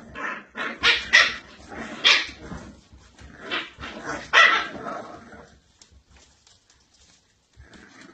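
Dandie Dinmont terrier puppies barking and growling at play, a string of short, sharp barks in the first five seconds that then dies away.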